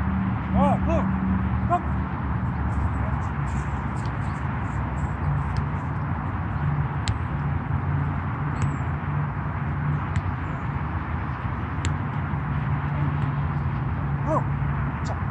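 Steady outdoor background noise with a low rumble, a few short high calls in the first two seconds, and scattered faint clicks.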